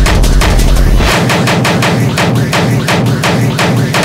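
Hardcore techno at 170 BPM: a fast, hard-hitting distorted drum pattern of rapid percussive hits. About a second in, the deep bass drops away and the hits carry on without the low end.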